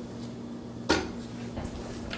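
A single sharp clack of cookware about a second in, over a low steady hum.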